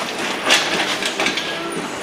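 Steel engine hoist with an engine hanging from it being rolled across a concrete shop floor: casters rattling and metal clanking, with a sharp clank about half a second in and a faint squeal later.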